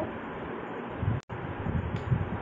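Steady background hiss with a low, uneven rumble, broken by a brief dropout to silence about a second in, where the recording is cut.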